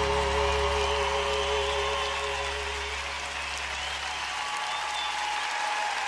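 Large audience applauding over the last held chord of the music, which fades out.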